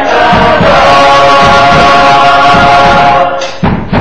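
Gospel choir singing live, holding one long chord that breaks off near the end, over a steady low beat about twice a second.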